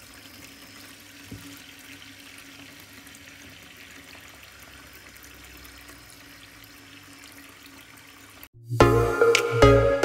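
Water running steadily into a shallow plastic tub, filling it to a few centimetres. About eight and a half seconds in, the water sound cuts off and loud electronic music with a beat begins.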